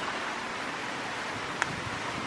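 Steady wind noise on the microphone, with a single light click about one and a half seconds in: a putter striking a mini golf ball.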